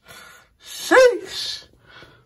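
A man's short, breathy vocal cry, gasp-like, that rises and then falls in pitch about a second in, with breath noise before and after it.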